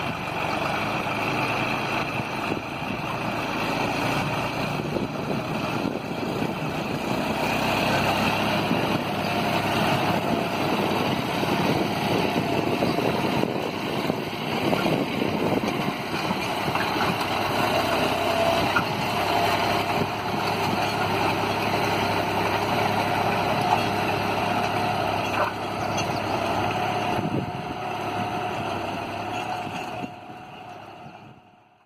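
John Deere 5310 tractor's three-cylinder diesel engine running steadily under load, pulling a two-bottom reversible mould-board plough through hard soil.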